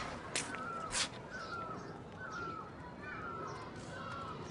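Birds calling over and over, short falling calls about every half second with fainter high chirps among them. Two sharp knocks come in the first second.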